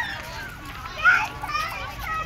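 Voices of people nearby, children among them, with a short, loud, high-pitched child's shout about a second in.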